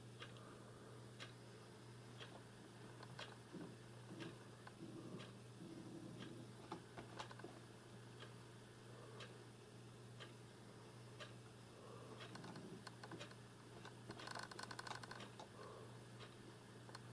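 Faint, scattered clicks at a computer, about one a second, with a quicker run of clicks near the end, over a low steady hum.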